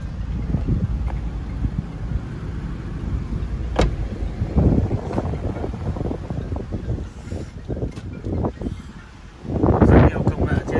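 Low rumbling noise from wind and handling on a handheld phone microphone. A sharp click comes about four seconds in, and a few dull knocks follow.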